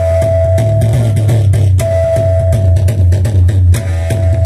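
Live qawwali music, loud: a steady held high note over a heavy low drone, with sharp drum strokes throughout. The held note drops out for about a second partway through, then returns.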